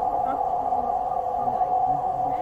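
A loud, steady drone with low, garbled voice fragments running underneath it.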